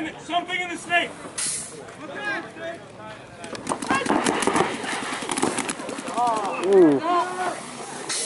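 Paintball markers firing in a rapid string of sharp pops for about two seconds midway, among players' shouted callouts.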